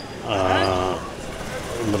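A man's brief wordless vocal sound, under a second long, then low street background noise.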